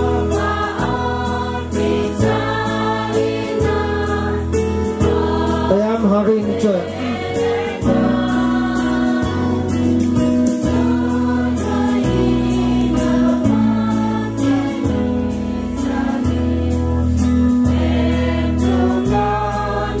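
A choir singing a hymn over a bass line and a steady beat of about two ticks a second. It is the offertory hymn, sung while the gifts are carried to the altar.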